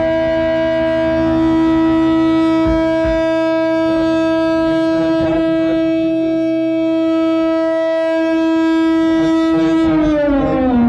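One loud, held electric guitar note sounding through the band's amplifiers as a steady feedback drone, with a few low thumps about three seconds in.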